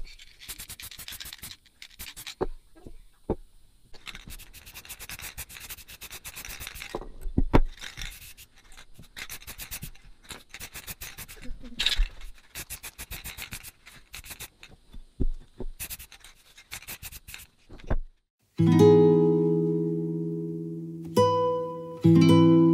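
Aerosol spray-paint cans in repeated bursts of rattling and hissing, with scattered clicks and knocks, as paint goes onto cast-iron weight plates. Near the end, acoustic guitar music starts and is the loudest sound.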